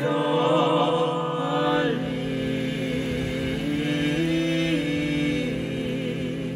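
Choir singing slow, sustained chords in a Hebrew liturgical piece, moving to a new chord every second or two.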